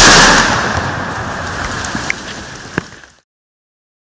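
A single loud shotgun blast whose noisy, reverberating tail dies away over about three seconds, with two sharp clicks near the end, then cuts off suddenly.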